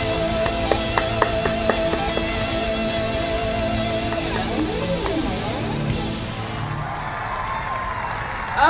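A live rock band ends a song: an electric guitar holds a long note over a few sharp drum and cymbal hits. The music dies away about five seconds in, and crowd applause takes over.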